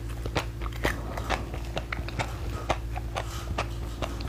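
Close-miked chewing of frozen basil seed ice: many small, irregular crunches and crackles as the icy seeds break between the teeth, over a steady low hum.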